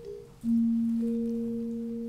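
Gamelan gendèr, bronze keys struck with padded disc mallets. A low note starts about half a second in and a higher note about a second in, and both ring on, overlapping.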